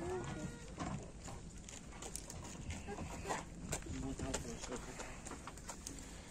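Faint open-air ambience: quiet, indistinct voices with scattered light clicks and taps, and no loud event.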